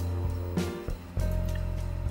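Background music with low sustained bass notes.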